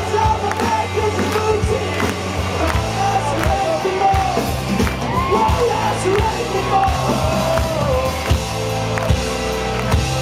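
Live band playing a folk-punk song: strummed acoustic guitar, drum kit and keyboard, with a man singing into the microphone.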